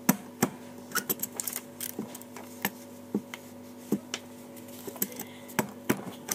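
Hands handling paper at a table: scattered light clicks and taps, about a dozen, irregularly spaced, over a steady low hum.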